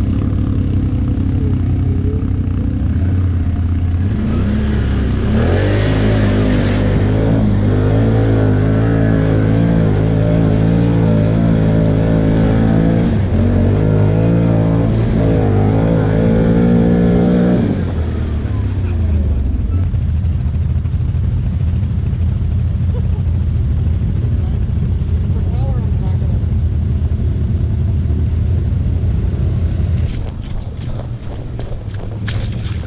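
ATV engine running steadily, then revving up about five seconds in and held at higher revs for about twelve seconds before dropping back to a lower steady run.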